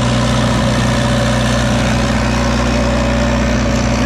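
Stationary engine power unit of an irrigation well, running steadily at constant speed while driving the well pump through its driveshaft and gearhead.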